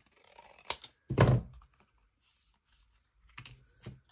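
Scissors snipping through Tetra Pak carton with a single sharp click about a second in, then a few soft taps and rustles of cut carton scraps being handled near the end.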